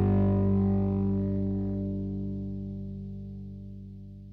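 A blues-rock band's final chord held on electric guitar, ringing and fading away steadily, with the higher notes dying out first.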